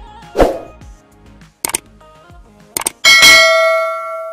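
Subscribe-button animation sound effects: a short whoosh, then two quick double mouse clicks about a second apart, then a bright notification-bell ding that rings on and fades. Background music runs under the start and stops about a second and a half in.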